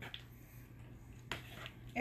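A spoon stirring chili in a pot, clicking against the pot's side a few times, with the clearest click about a second and a half in, over a faint steady hum.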